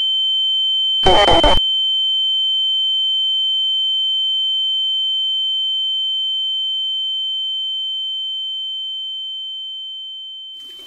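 A steady, high-pitched ringing sine tone with a faint lower tone beneath it: a film's ear-ringing sound effect, fading out slowly near the end. About a second in, a short harsh burst of noise cuts in for half a second and stops abruptly.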